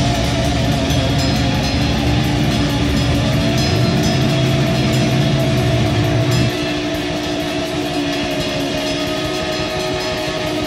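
Live noise-rock band playing: electric guitar, bass and drums under long, steady held tones that drone like a horn. The heavy bass end drops away about six and a half seconds in, leaving the held tones and the drums.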